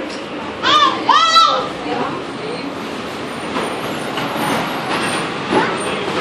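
A small child's voice gives two short, high-pitched squeals in quick succession about a second in, with a shorter cry near the end, over steady background noise.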